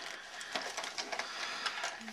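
Hands rummaging through a black fabric backpack: rustling of the cloth with a series of short scratchy clicks from its zipper as a pocket is worked open.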